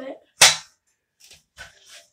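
A single sharp knock about half a second in as a ladder and its slide piece are set down and fitted together, followed by a few faint handling knocks.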